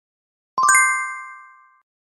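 A bright chime sound effect: a quick run of struck notes about half a second in that blend into a clear ringing chord and fade out over about a second, marking the successful float test.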